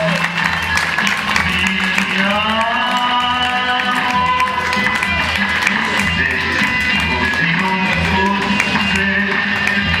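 A live heavy instrumental rock band playing loudly: distorted electric guitar and a drum kit, layered with electronic noise, with a few sliding notes about two seconds in.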